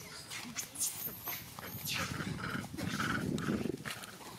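Macaques giving short, squeaky calls, with a couple of clearer cries in the second half over a dense rustling noise.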